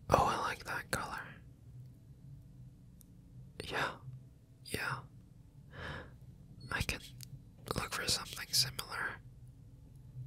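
A man whispering in several short, breathy phrases with pauses between them, over a faint steady low hum.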